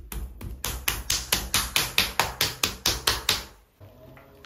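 Open hands slapping a soft lump of wet clay on a potter's wheel head, patting it into a centred cone, in a quick, even rhythm of about five slaps a second that stops shortly before the end.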